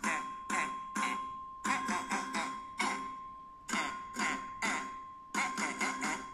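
Children's alphabet song playing through laptop speakers: a man's voice repeating the short "e" letter sound, about a dozen quick, clipped "eh" sounds in rhythm. A faint steady high tone runs underneath.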